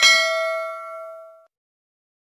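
A notification-bell sound effect: one bright ding that rings and fades out over about a second and a half.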